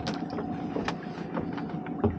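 Steady mechanical hum from the boat's machinery, with a couple of sharp knocks as a lobster pot is hauled up against the side of the boat.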